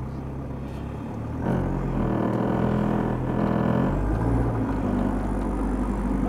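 Toyota Prado 90-series four-wheel drive engine heard from inside the cabin, rising in revs about one and a half seconds in and then pulling steadily under load as the vehicle crawls and tilts over a rocky section of track.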